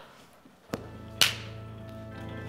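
Soft underscore music from the pit band begins after a brief silence, opening with a click and then held, sustained chords, with one short bright splash just over a second in.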